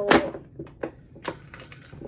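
A few irregular sharp clicks and taps from a boxed doll's cardboard and plastic window packaging knocking in the hands as it is turned over.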